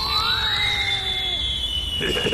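Cartoon whistle sound effect: a long high whistle falling slowly in pitch, the stock sound of something sailing high through the air and coming down. Under it a second whistle rises briefly at the start and then holds, and a lower one slides down and stops about one and a half seconds in.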